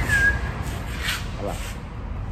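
A single short whistle to call a puppy: it rises quickly, then holds one steady note for about half a second.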